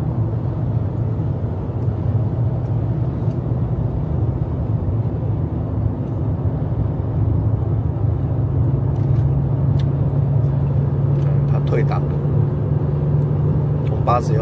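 Engine drone and road noise inside the cabin of a 22-year-old van climbing a long freeway grade under load. The low hum steps slightly higher in pitch past the middle as the van slowly gathers speed again from about 80 km/h.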